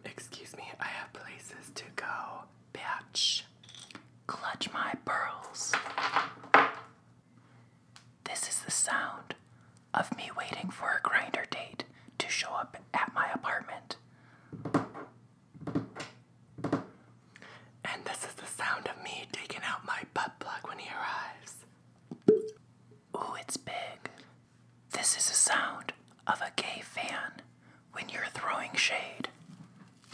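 Whispered speech close to the microphone in an ASMR style, in short phrases broken by brief pauses.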